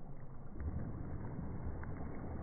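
Water splashing as a dog leaps and lands in a shallow pool, a low, deep rumble that grows heavier about half a second in.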